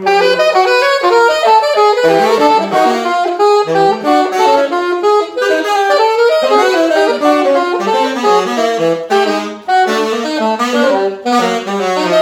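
Tenor and alto saxophones jamming together in fast, restless runs of short notes that shift pitch constantly, with no settled melody.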